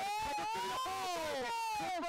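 Two voices giving one long, high-pitched drawn-out exclamation together, overlapping, their pitch rising and then falling, as an excited reaction to the free kick going into the box.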